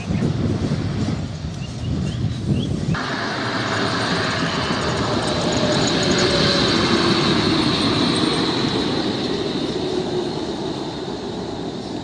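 Bus traffic. A diesel bus engine runs close at first. About three seconds in the sound changes abruptly to the steady rush of a bus driving along a highway, with a faint engine tone that slowly falls in pitch.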